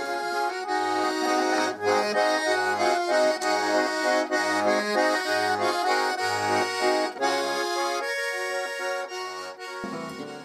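Button accordion playing a lively traditional folk tune, the melody over a steady bass beat of roughly one note a second; the playing thins out in the last couple of seconds.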